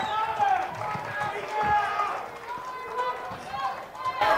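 A roomful of people talking at once, many overlapping voices with no single speaker standing out, with a few soft low thumps.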